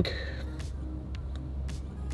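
A low, steady background rumble with a few faint clicks, in a pause between spoken sentences.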